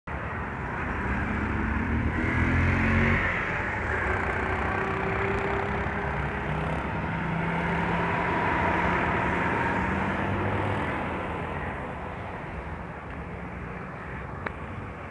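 Motor traffic running past unseen: a steady rumble with a low engine hum that swells about two to three seconds in and again around eight or nine seconds, then fades near the end.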